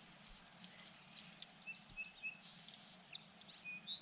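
Birds chirping and calling against faint outdoor background noise: many short high chirps and a few brief whistled notes, with a short buzzy trill a little past the middle.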